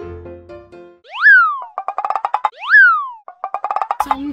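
Cartoon-style comedy sound effect played twice: a quick whistle-like glide that shoots up in pitch and drops back, followed by a fast rattle of short clicks. It comes in about a second in, as a light music phrase dies away.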